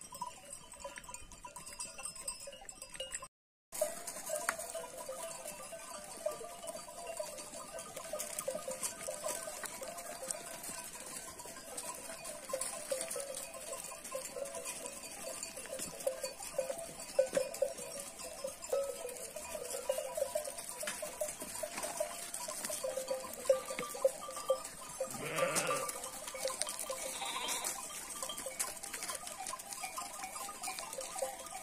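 A flock of sheep on the move, with many sheep bells clanking steadily. Near the end one sheep gives a low bleat, and soon after another bleats higher.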